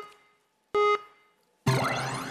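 Electronic countdown beeps from a game show, two short tones about a second apart, then near the end a loud rising synth sweep that rings on and fades as the music clip is cued to play.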